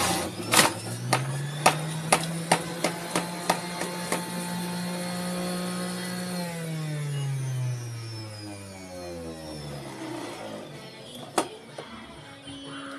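Electric centrifugal juicer's motor running with a steady hum while fruit pushed down the chute knocks against the spinning basket, about twice a second for the first few seconds. About six seconds in the motor is switched off and winds down, its pitch falling until it dies away near ten seconds, and a sharp click follows near the end.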